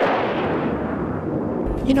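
Cinematic boom sound effect for a title card: a sudden loud hit trailing off in a long rumbling, hissing decay, with a deep thump near the end.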